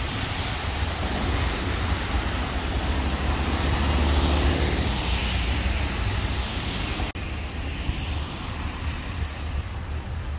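City street traffic: cars driving past on wet pavement, a steady rumble with tyre noise that swells as a car passes about four seconds in.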